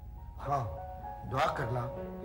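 Brief spoken dialogue over soft background music with held, sustained notes.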